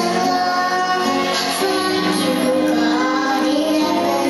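A slow song sung with musical accompaniment, the voice holding long notes.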